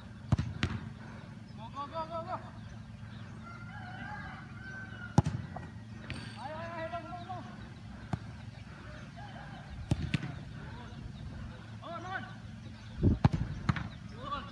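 Footballs kicked and blocked on a grass training pitch: sharp thuds a few at a time, the hardest about five seconds in and a quick cluster near the end.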